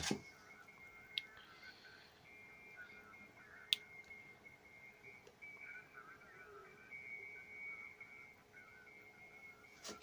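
Quiet room tone with a faint, steady high-pitched whine and a weaker low hum, broken by a light click about a second in and a sharper, louder click near four seconds in.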